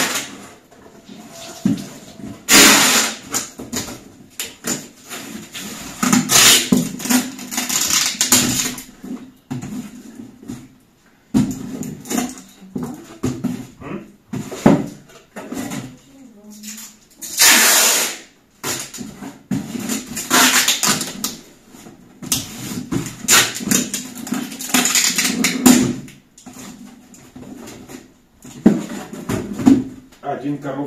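Packing tape being pulled off the roll and pressed onto a cardboard box, in several loud rasping pulls of one to three seconds each.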